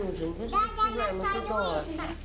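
Speech: a mother's voice talking close to her son, telling him never to do it again and that she needs him.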